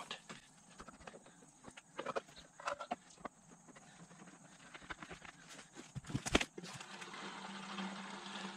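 Scattered light clicks and knocks of a red plastic gas can and its yellow spout being handled at a small engine's fuel tank, with one sharp knock about six seconds in. A faint steady sound starts near the end as the spout sits in the filler.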